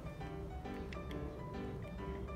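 Soft background music of plucked-string notes, with no speech over it.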